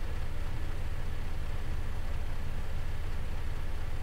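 Steady low hum with a faint even hiss: background noise from the recording microphone while nothing else is sounding.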